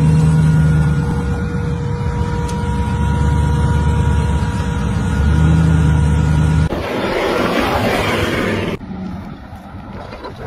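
Rock-crawling Jeep Cherokee XJ engine running under load in low gear, swelling in two revs, with a steady whine over it. About seven seconds in it breaks off into a rushing noise for about two seconds, then drops to a quieter sound.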